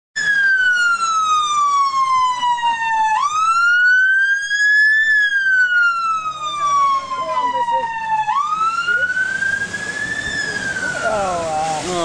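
Police van siren wailing, sliding slowly down in pitch over about three seconds and then rising again, twice over, weakening near the end as the van moves away.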